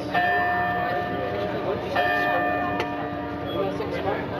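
Church bell tolling, struck twice about two seconds apart, each stroke ringing on and fading slowly, over crowd chatter.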